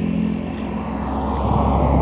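A motor vehicle passing on the road, its engine and tyre noise swelling in the second second.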